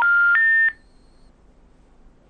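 Telephone special information tone on the call-in line: three steady beeps stepping up in pitch, the last ending about two-thirds of a second in. It is the network's signal that the call cannot be completed.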